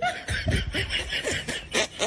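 People laughing: a quick run of short laughs, several each second.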